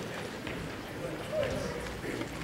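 Indistinct audience chatter: many voices talking at once, with one voice briefly rising a little louder near the end.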